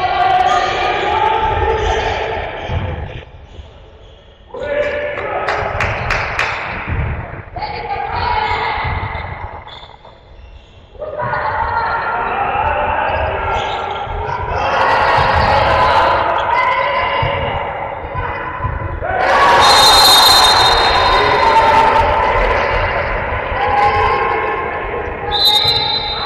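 A handball bouncing repeatedly on an indoor court floor, among players' voices.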